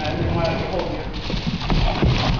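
Feet and a plastic bin knocking on a hard floor as a person hops with the bin, a few uneven knocks, with voices over the top.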